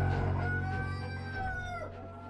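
Intro music fading down, with a rooster crowing once, one long drawn-out call, over it.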